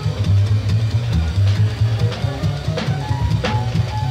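Live small-group jazz from a quartet of tenor saxophone, piano, double bass and drums. A plucked double bass moves note to note underneath, with drum-kit and cymbal hits, and a few higher notes enter above them near the end.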